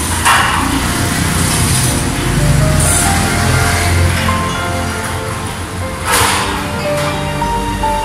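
Background music: a slow melody of held notes over a low bass line.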